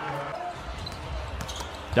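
Basketball game sound on a hardwood court: a ball bouncing over a low, steady arena hum, with a few faint knocks late on.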